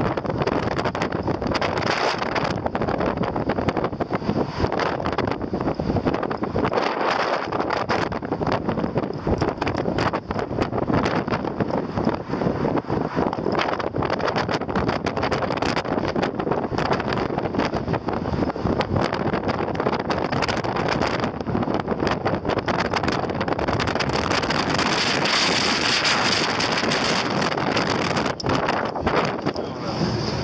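Wind buffeting the microphone over the steady road and engine noise of a car driving along, heard from inside the moving car.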